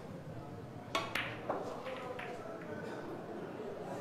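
A Chinese eight-ball shot: the cue tip strikes the cue ball with a sharp click about a second in. About a fifth of a second later comes a second click, the cue ball hitting an object ball, followed by a few fainter ball knocks.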